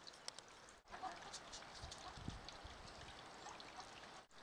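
Near silence: faint outdoor background hiss with a few soft, scattered ticks.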